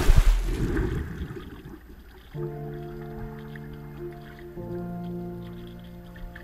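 A splash into water, its rush and bubbling fading over about two seconds. Then soft, sustained music chords come in, changing once about halfway through.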